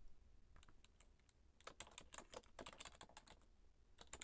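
Faint typing on a computer keyboard: a few scattered keystrokes, then a quicker run of keystrokes from just under two seconds in.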